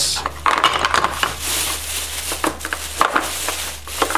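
Thin plastic shopping bag crinkling and rustling as abalone shell pieces are pulled out of it, with several short, sharp clacks of shell set down on a wooden workbench.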